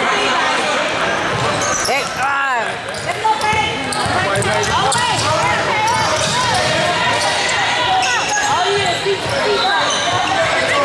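Basketball bouncing on a hardwood gym floor and sneakers squeaking as players run, mixed with the voices of players and spectators, echoing in a large hall.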